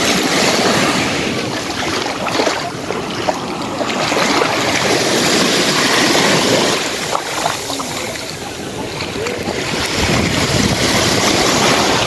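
Small sea waves breaking and washing up onto a sandy beach, a steady rush of surf that swells and eases every few seconds.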